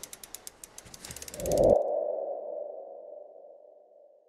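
Logo sting sound effect: a run of ticks that quicken over the first second and a half, then a single ringing tone that swells and slowly fades out.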